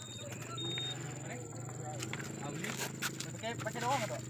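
People's voices talking in the background over a steady low hum.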